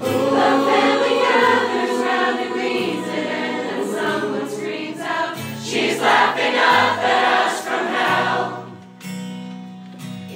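A large crowd choir of mostly women's voices singing a pop song together, loud and full, over steady low backing notes. The singing eases off about nine seconds in.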